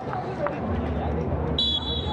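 Stadium ambience with a low rumble, then near the end a referee's whistle blows one long, steady, shrill blast to restart play with the kick-off.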